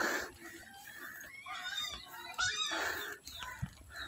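A bump at the start, then a few short animal calls, high and sliding, around the middle.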